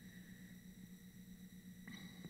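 Near silence: room tone with a faint, steady hum.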